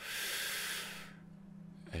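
A man taking one long, audible breath in, a hissing inhale lasting about a second that fades out.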